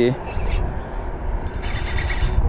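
Spinning reel whirring briefly near the end while a hooked whiting is played on light line, over a low steady rumble.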